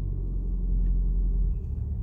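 Low steady rumble of a car's engine and tyres heard from inside the cabin while driving; the deepest part of the rumble falls away near the end.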